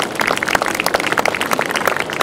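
A small crowd applauding, a steady patter of many hand claps, as the introduced speaker reaches the podium.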